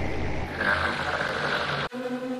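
MixFood Unison software synthesizer playing its Airplanes sound-effect patch: a dense, noisy rumble with a rough low buzz, joined by a brighter hiss about half a second in. It cuts off suddenly just before the end.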